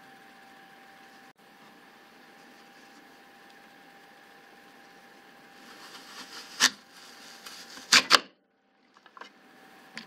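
Pampered Chef Veggie Wedger's serrated stainless-steel blades pushed down through a whole apple: after some seconds of quiet room tone with a faint steady hum, crunching builds about halfway through, with a sharp click and then two loud clacks close together as the cutting head goes down into the plastic base.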